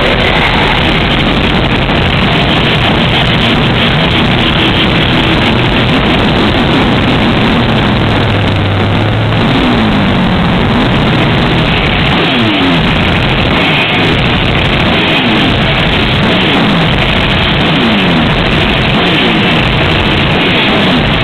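Black metal band playing live: a loud, dense, unbroken wall of heavily distorted guitars and drums.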